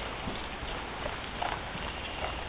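A horse's hooves falling on soft dirt arena footing as it walks on the lunge line, a few soft irregular thuds over steady background noise.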